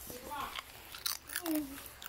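Watermelon being bitten and chewed, with short wet, crunchy bites, mixed with brief bits of children's voices.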